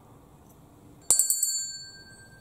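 A small bell struck once about a second in, ringing on with a clear high tone that slowly fades. It marks the start of Mass.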